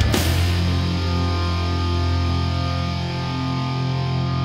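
Rock band music: a chord is struck with a cymbal crash, then a sustained guitar and bass chord rings out while the drums stop.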